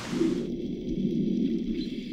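Muffled underwater ambience: a dull, steady low rush that takes over about half a second in, with the higher sounds almost gone.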